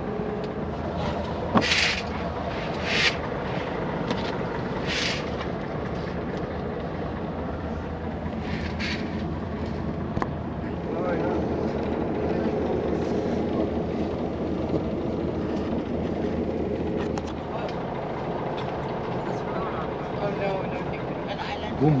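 Bus engine and road rumble heard from inside the cabin of a sleeper bus, steady and low throughout, with several short hisses in the first nine seconds.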